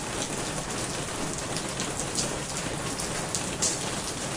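Steady rain falling, with scattered individual drops hitting a little louder through the steady hiss.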